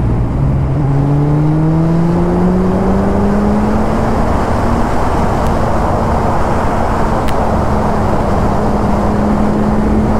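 Suzuki Hayabusa's 1340 cc inline-four engine pulling in gear, its note rising for the first few seconds and then holding steady at cruising speed, under heavy wind and road noise.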